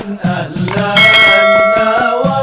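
Intro music with a wavering melody. About a second in, a bright bell chime sound effect rings out and holds for about a second over the music.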